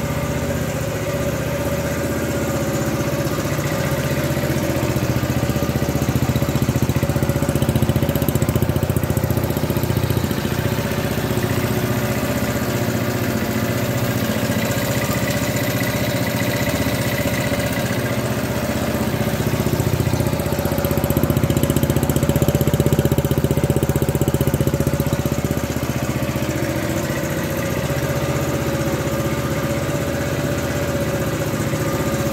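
1969 Honda CT90 Trail 90's 89 cc single-cylinder four-stroke engine running steadily at idle on a cold start without choke. It gets somewhat louder for a few seconds twice, about a quarter of the way in and again past the middle.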